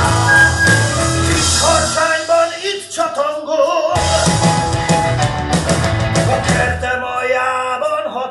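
Rock band music with a singing voice; the bass and drums drop out for a couple of seconds twice, leaving the voice and higher instruments.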